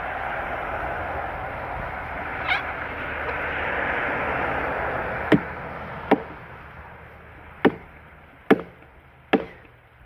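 Axe chopping into a log: five sharp strikes, a little under a second apart, starting about five seconds in. They follow a steady rushing noise that fades away as the chopping begins.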